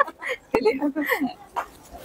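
A person's voice in short sounds that glide up and down, with a sharp click about half a second in.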